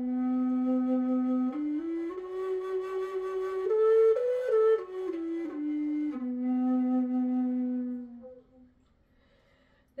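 Redwood Native American style flute in the key of low B playing a short, slow phrase: a long held low note, a stepwise climb to its highest notes about four seconds in, then a stepwise return to the long low note, which fades out near the end. Its tone has the smoky, meditative quality typical of softwood flutes.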